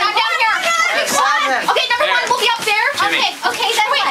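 A group of teenagers all talking over one another at once, with many voices overlapping and no one voice standing out.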